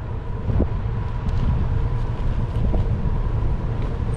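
Wind buffeting the microphone of a camera on a moving bicycle, a steady low rumble, as the bike rolls along a paved road.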